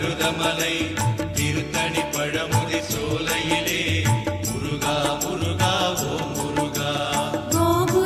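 Murugan devotional song music for Cavadee, with a steady drum beat under melodic lines; a new, fuller phrase comes in near the end.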